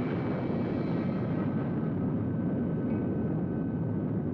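Steady deep roar of a rocket engine in flight, its higher hiss thinning slightly over the seconds.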